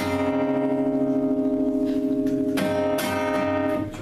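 Acoustic guitar chord strummed once and left ringing, then strummed again about two and a half seconds in.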